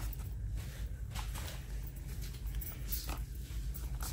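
Faint, scattered knocks and rustles of small cardboard soap boxes being handled, over a steady low hum.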